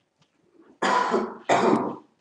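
A man coughing twice, loudly, about a second in and again half a second later.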